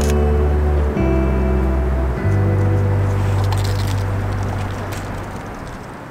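Background music: a slow song's instrumental passage of long held low notes, the chord changing about a second in and again about two seconds in, fading gradually toward the end.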